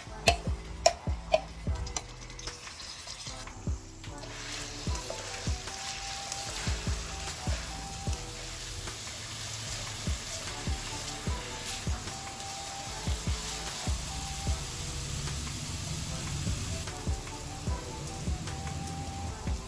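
Garlic and onion paste sizzling as it fries in oil in a wok while it is stirred with a spatula. There are a few sharp knocks near the start as the paste is scraped in from a bowl, and the hiss fills in from about four seconds in.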